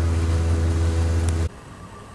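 CNC milling machine's axis drive motors running as the Y and Z axes travel home during the homing cycle: a steady low hum that cuts off suddenly about one and a half seconds in.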